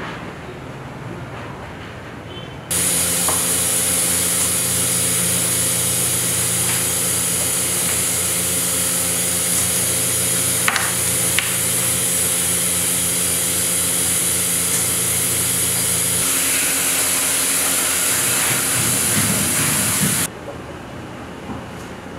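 Machinery of a herbal extraction workshop running: a loud, steady hiss over a low, even hum, with two sharp clicks near the middle. It starts abruptly a few seconds in, and the lower part of the hum drops away a few seconds before it cuts off near the end.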